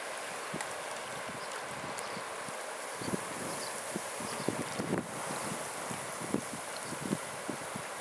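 Waterside wind and rippling water making a steady hiss, with many soft, irregular knocks and clicks throughout.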